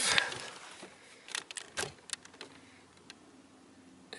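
Handling noise: a few light clicks and taps as a hand moves on a boat fish finder unit and its mount, with a faint low hum underneath in the second half.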